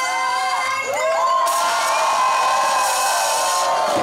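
A crowd cheering and whooping, with long held shouts, swelling about one and a half seconds in.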